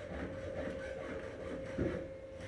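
A steady mid-pitched hum over a low rumble, with a short thump near the end.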